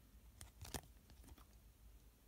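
Near silence with a few faint clicks of a rigid plastic card holder being handled as the card is turned over, the clearest just under a second in.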